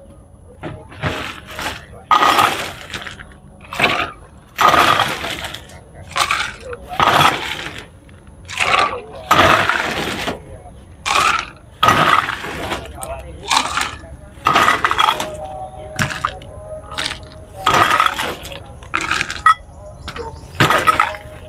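Clear plastic bags crinkling and rustling in irregular loud bursts as food offerings are unwrapped and set out on a table.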